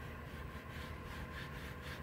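A foam applicator pad rubbing back and forth over textured plastic bumper trim as conditioner is spread on. It makes faint, quick, repeated swishes.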